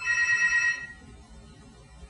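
A telephone ringing: one electronic ring of about a second, a steady chord of several high tones, right at the start.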